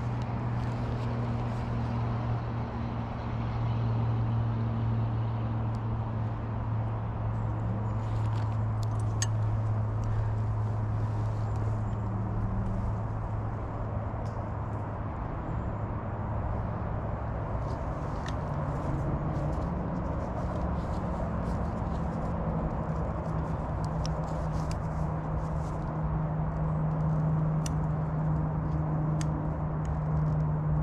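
A distant engine drones steadily, its pitch stepping up a little about two-thirds of the way through, with scattered light clicks and ticks over it.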